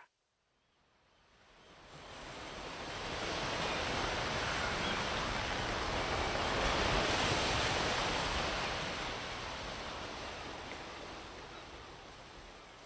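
Ocean surf sound effect: a wash of wave noise that rises out of silence about a second in, peaks around the middle, and slowly fades away toward the end.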